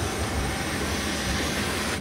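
Steady rushing drone inside a passenger jet's cabin, the engine and air-system noise heard from a seat.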